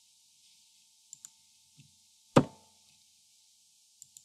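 Clicks from someone working a computer's keyboard and mouse: two quick light clicks, then one sharp, much louder knock about two and a half seconds in.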